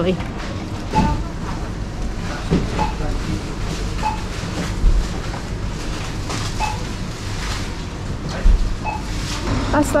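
Supermarket ambience: a steady hum with faint background chatter, and about six short electronic beeps from the checkouts at irregular intervals.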